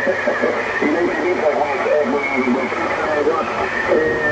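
A voice received over single-sideband on the 40 m band, coming through the Yaesu FTdx5000 transceiver with band noise under it. It sounds thin, with nothing above the narrow speech passband.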